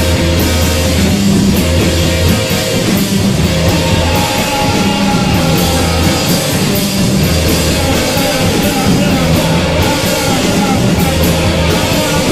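A rock band playing live, loud and continuous, with electric guitar and a drum kit.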